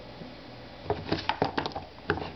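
Handling noise: a quick run of light clicks and taps starting about a second in, over faint room hiss.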